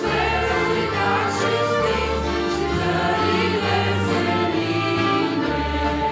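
Live worship music: mixed male and female voices singing a hymn together, accompanied by accordion, keyboard and saxophones, with a bass line that moves about once a second.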